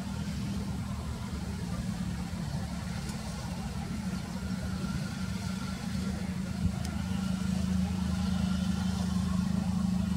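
A steady low mechanical rumble that runs on without a break and grows slightly louder in the second half.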